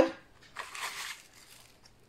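Crinkling of a plastic packet of dried herbs being handled as a spoon is dipped into it: one short rustle starting about half a second in and lasting under a second, then only faint handling noise.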